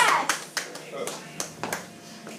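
Scattered hand clapping from a small audience: a handful of separate claps rather than full applause.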